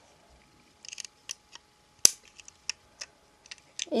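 Short plastic clicks and taps of a Lego truck being handled: a little cluster about a second in, then scattered single clicks, the sharpest a little past halfway.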